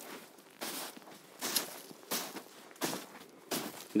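Footsteps in snow, a step about every 0.7 seconds, each a short crunch.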